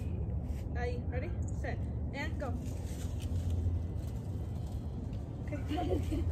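Wind buffeting the microphone as a steady low rumble, with a few brief vocal sounds in the first half and a voice starting near the end.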